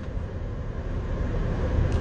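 Steady low rumble of a car's engine and cabin noise, heard from inside the car.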